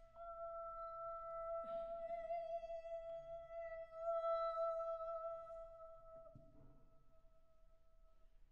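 A soprano holding one steady high note with her hands cupped to her mouth. The tone brightens about two seconds in, swells around the middle and fades out near the end.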